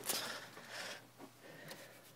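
Faint rustling and handling noise, with a short scrape-like rustle right at the start and weaker scattered rustles after it.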